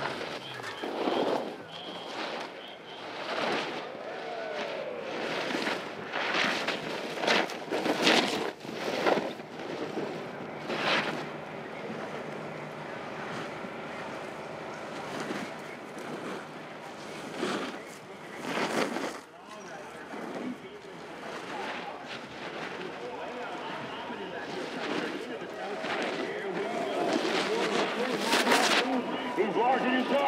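Snowboard edges carving on firm snow in parallel slalom turns, a separate hissing scrape with each turn at irregular intervals, with voices in the background.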